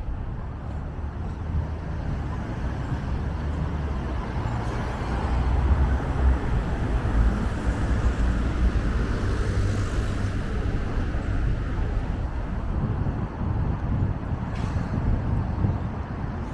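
City street traffic: cars and a bus driving by, a steady low rumble of engines and tyres that grows a little louder around the middle.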